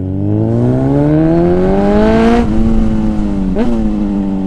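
Motorcycle engine accelerating. Its pitch climbs steadily for about two and a half seconds, then drops sharply at an upshift and holds, with a quick rise and fall near the end. A steady rush of wind noise runs underneath.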